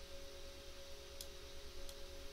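Two faint computer-mouse clicks, about a second in and near the end, over a steady low electrical hum from the recording setup.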